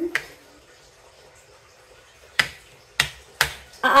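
Sharp clicks of a plastic game piece set down on the board as it is moved space by space: one at the start, then three more about half a second apart near the end.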